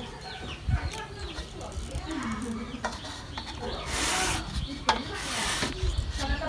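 Chickens clucking in the background while a fig bonsai is pruned: two loud bursts of rustling as branches are handled, about four and five and a half seconds in, and a sharp snip of pruning shears just before five seconds.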